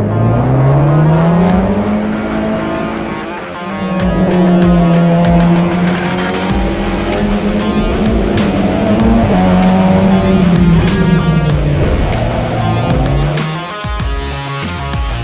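Audi RS3 LMS TCR race car's turbocharged four-cylinder engine heard onboard under full acceleration from the race start: its pitch climbs over the first two seconds, dips briefly about three and a half seconds in, holds high, then falls near the end. Music plays underneath.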